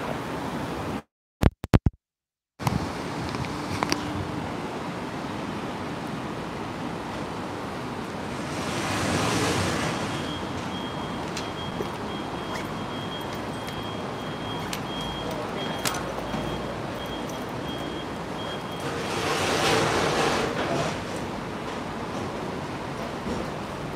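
Steady outdoor ambience of a splashing water fountain and traffic noise. It swells twice, once about nine seconds in and again near the end, and the sound drops out briefly about a second in.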